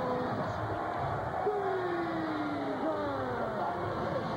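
Arena crowd noise during a wrestler's ring entrance, with long, drawn-out voices falling in pitch; the strongest comes through the middle.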